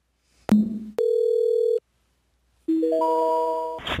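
Telephone line sounds: a click, a short steady beep, then a quick rising three-note intercept tone that precedes a 'call cannot be completed' recording.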